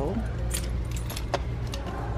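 A few sharp, light clicks and metallic jingling over a steady low hum.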